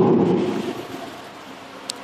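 A pause in a man's sermon: the last word echoes and dies away over about a second, leaving faint steady hiss, with one short click near the end.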